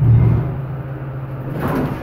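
Steady low hum of a hydraulic elevator, with a dull thump at the start and a softer knock near the end.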